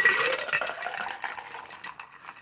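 A shaken cocktail and its crushed ice dumped from a cocktail shaker into a ceramic tiki mug: liquid splashing and ice clattering in, loudest at the start and tapering off, with a rising ring as the mug fills.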